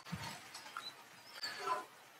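A pause with quiet room noise and a couple of faint, indistinct sounds, one just after the start and one near the end.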